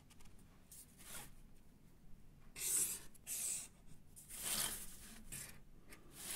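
Marker pen drawing straight lines along a ruler on brown cardboard: several short strokes, the loudest about two and a half to three and a half seconds in.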